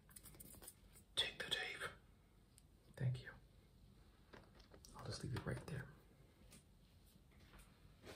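Indistinct whispering in three short bursts: about a second in, around three seconds in, and between five and six seconds in.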